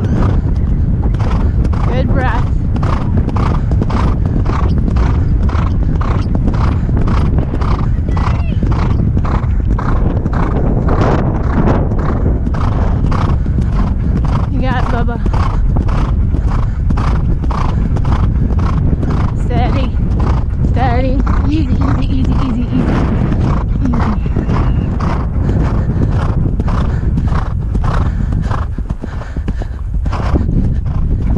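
Thoroughbred gelding galloping on grass: hoofbeats and breathing in an even rhythm of about two strides a second.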